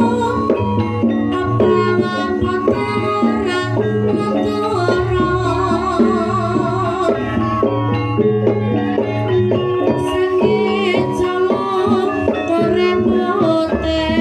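Live Javanese gamelan music for lengger dance: tuned metal percussion playing steady interlocking notes over a hand drum (kendang) beat, with a singer's wavering voice coming in over it in stretches.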